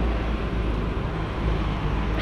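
Steady outdoor street background noise: a continuous low rumble with a hiss over it, typical of road traffic nearby.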